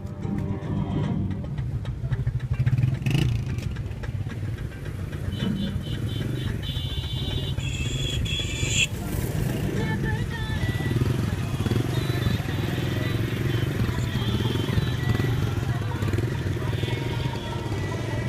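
Vehicle engines and road traffic rumbling steadily, with voices around. A high pulsing tone sounds for a few seconds about halfway through.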